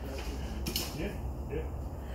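Faint, indistinct voice under a steady low hum.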